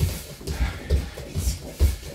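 Feet bouncing on a wooden floor during a warm-up, a steady run of low thuds about two a second.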